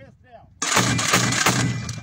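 2B9 Vasilek 82 mm automatic mortar firing a quick burst of shots, starting suddenly about half a second in and lasting over a second.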